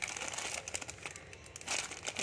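Clear plastic packets crinkling and rustling as a hand sorts through them, loudest at the start and again near the end.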